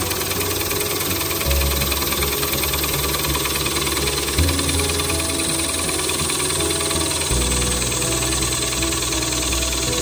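Wood lathe hollowing the inside of a spinning bowl blank with a gouge, a steady hiss of cutting as shavings come off. Background music with low notes that change every few seconds plays over it.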